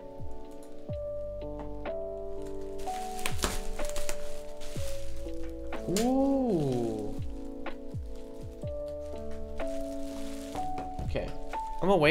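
Background music with slow sustained notes, over which a bubble-wrapped album package is handled, giving several sharp knocks and thunks at irregular intervals.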